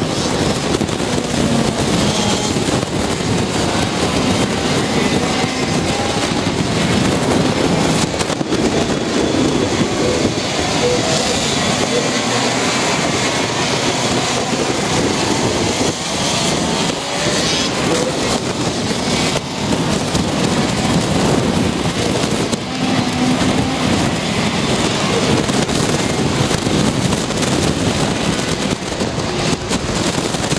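Racing kart engines running on a circuit during qualifying laps, a steady loud engine noise that rises and falls a little as the karts pass.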